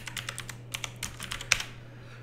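Typing on a computer keyboard: a quick run of key clicks, with one harder keystroke about one and a half seconds in.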